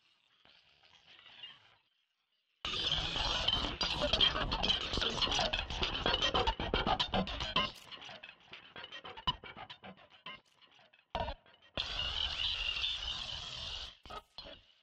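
Electronic music from a heavily modulated Mimic sampler synth in Reason: a dense, noisy texture enters after a brief dropout, breaks up into rapid stuttering clicks, then returns loud and cuts off suddenly at the end.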